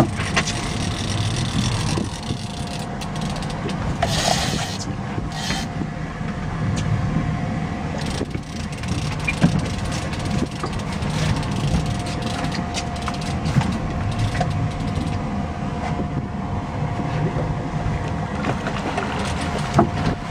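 A boat motor running steadily, a low rumble with a faint steady whine above it, and scattered sharp clicks and knocks.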